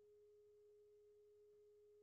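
Near silence, with only a faint, steady, unchanging mid-pitched hum in the recording.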